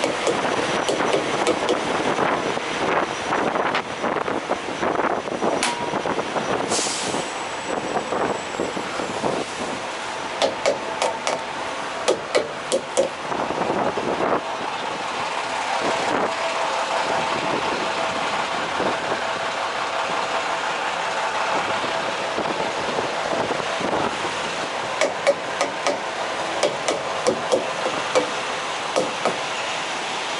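Diesel semi trucks idling in a steady din, with a short air-brake hiss about seven seconds in and scattered clicks and knocks.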